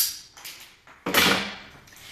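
Scissors snipping through a jump rope cord: a sharp click, then a faint tick, and about a second in a louder knock.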